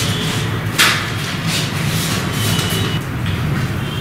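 Steady low hum of background room noise with a brief rustle about a second in.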